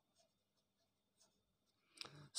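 Near silence, with the faint, irregular scratching of a ballpoint pen writing on lined notebook paper.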